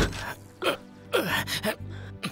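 A man's several short pained gasps and groans as he strains at the pedals of a loaded cycle rickshaw, a sign that he has hurt himself, with background film music underneath.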